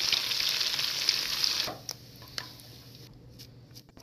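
Beaten egg sizzling in hot oil in a wok as it is poured in and stirred with chopsticks. The sizzle cuts off suddenly a little under halfway through, leaving only a few faint ticks.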